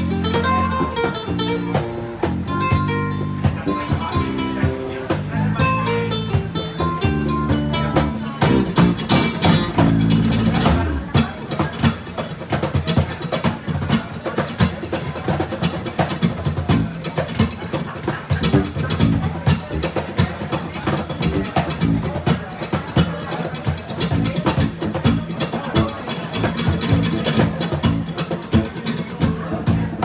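Live acoustic music from two guitars, one a nylon-string classical guitar, with a cajón keeping time. Sustained notes ring out at first, then about eleven seconds in the playing turns to fast, dense strumming and hits.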